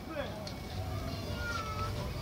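Murmur of crowd voices, with a single thin, high mewing call from a gull near the end.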